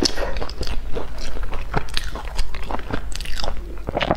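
Crunchy biting and chewing of crispy, crumb-crusted fried cakes, close to the microphone: a fast, irregular run of crackling crunches.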